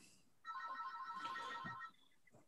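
A phone ringtone, faint: a few high pitches pulsing rapidly together, starting about half a second in and stopping near the end.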